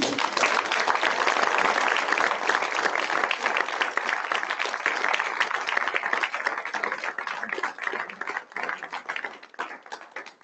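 Audience applauding, many hands clapping at once; the applause thins out and fades over the last few seconds.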